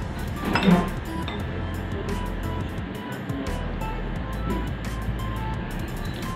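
Background music playing, with a metal spoon clinking against a dish once, loudly, a little over half a second in.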